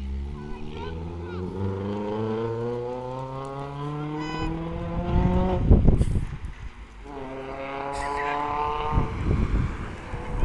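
A car engine accelerating hard under load, its pitch climbing steadily for about five seconds, then cut off by a loud rushing burst, then climbing again in the next gear near the end.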